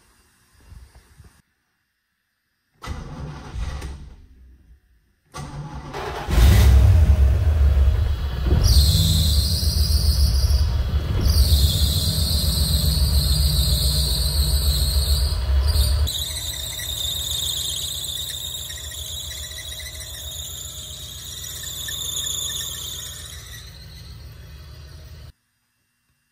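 1987 Camaro Z28's V8 cranks and starts about five seconds in and runs at a fast idle. A couple of seconds later a loud, high squeal of a drive belt slipping on the alternator pulley sets in and carries on, easing off toward the end. The owner takes the slipping for an alternator going full field, its pulley red hot.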